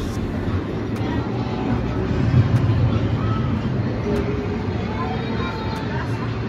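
Wooden roller coaster train in motion: a steady low rumble from the track with rushing wind noise, loudest about two to three seconds in, and faint voices near the end.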